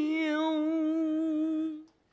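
A man singing one long, steady held note of a taiping geci ballad, the drawn-out end of a sung line; it fades out shortly before two seconds in.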